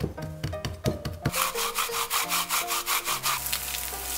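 Quick, evenly repeated scraping strokes of a knife worked over beef wrapped in paper towel on a wooden cutting board, over light background music. Shortly before the end this gives way to the steady sizzle of floured beef slices frying in a pan.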